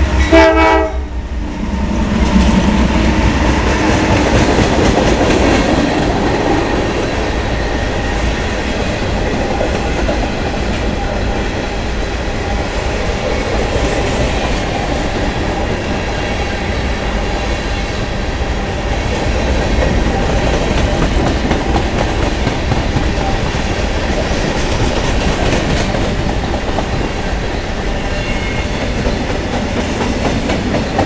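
Norfolk Southern freight train passing close by. A loud, brief horn-like blast sounds in the first second as the lead diesel locomotives go past. Then a long string of covered hoppers and tank cars rolls by with steady wheel noise and clickety-clack over the rail joints.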